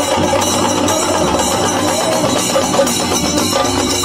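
Loud, continuous music with drums and percussion.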